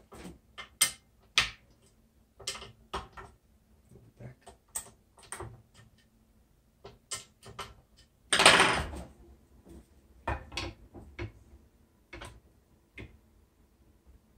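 Scattered clicks, taps and knocks of a Gamma X-2 tennis stringing machine's mounting arm being adjusted with a hand tool, with one louder clatter a little past halfway.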